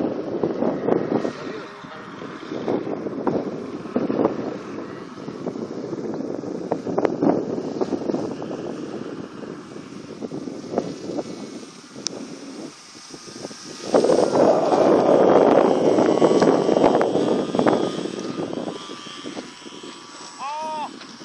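Radio-controlled model airplane's motor and propeller droning in flight, under wind buffeting the microphone. The sound grows much louder for a few seconds about two-thirds of the way through.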